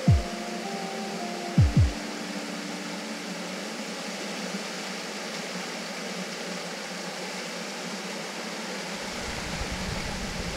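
Steady rush of a small creek cascade, under background music that ends about two seconds in after two pairs of deep drum hits. Near the end a vehicle's low rumble comes in as a Jeep Wrangler towing a teardrop trailer drives through the shallow ford.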